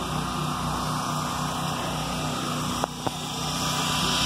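A motor running steadily, a low hum with an even pulse, with two short clicks about three seconds in.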